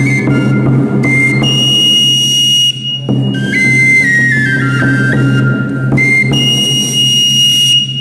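Music: a high-pitched flute melody of long held notes and a stepwise falling run, over a steady low drone. The music breaks off briefly about three seconds in.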